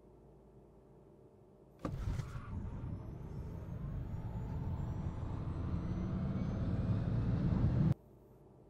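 Tesla Model S Plaid launching hard down the drag strip, heard from inside the cabin: a sudden surge of road and tyre noise about two seconds in, with a faint high electric-motor whine rising in pitch as the noise builds steadily, until it cuts off abruptly near the end.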